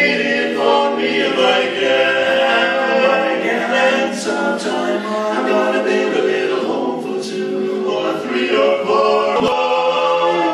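Male barbershop quartet singing a cappella in close four-part harmony, holding long chords.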